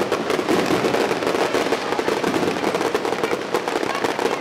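Fireworks going off in a dense, continuous crackle of many small pops with no pause.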